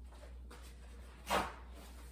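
Quiet kitchen room tone with a low steady hum, broken once, a little over a second in, by a short, sharp noise.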